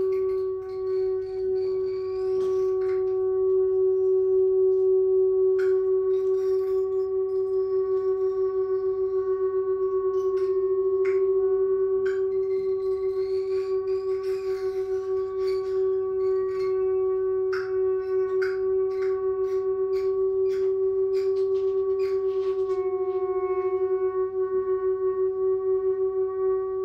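Free-improvised music for clarinet, electric guitar and voice with objects: a single pitched tone held unbroken throughout, with scattered short clicks and taps over it. The held tone pulses in loudness near the end.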